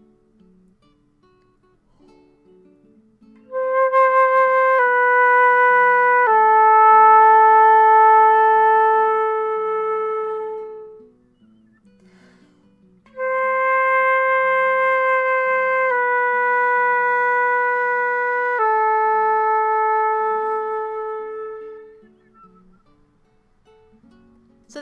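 Concert flute playing a slow slurred long-tone figure twice: three notes stepping down, C, B, A, with the last note held longest, then a pause of about two seconds before the repeat. Soft guitar background music runs quietly underneath.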